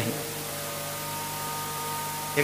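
Steady electrical hum from the microphone and public-address sound system, several held tones over a constant hiss.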